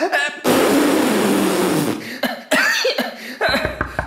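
Animatronic stage show soundtrack: a loud, rough noise from the sick character, lasting about a second and a half, then short vocal sounds, and knocking at a door near the end.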